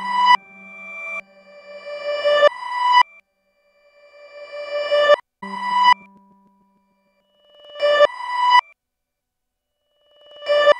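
Synthesized electronic tones from a Max/MSP patch of comb and allpass filters and delay lines: pitched, overtone-rich chords that swell up over about a second and cut off sharply, over and over, with short silent gaps between.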